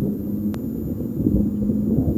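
Steady low rumble with a faint hum and one sharp click about half a second in: the background noise of an old speech recording during a pause.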